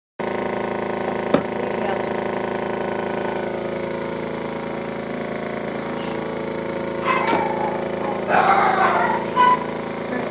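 Small airbrush compressor running with a steady hum, with one sharp click about a second in.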